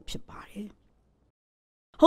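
A woman's soft, breathy speech trailing off, then about a second of complete silence before her voice comes back at the very end.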